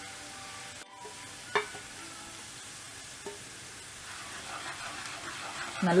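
Oil sizzling steadily in a kadai as spice powders fry in it with onions, with one short metallic clink about a second and a half in. The sizzle grows a little busier toward the end as the masala is stirred with a wooden spatula.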